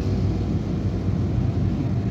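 Steady low rumble of a stationary car heard from inside its cabin, typical of the engine idling.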